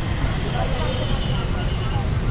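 Dense street traffic: motorcycle, scooter and car engines running as vehicles crawl past, a steady low rumble with faint voices in the background.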